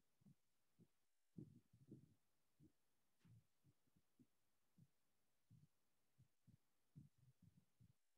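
Near silence with faint, irregular soft knocks from a marker being pressed and stroked across a whiteboard while writing.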